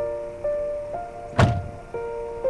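A Toyota sedan's car door shut once with a single heavy thunk a little past halfway through, over slow background music of sustained notes.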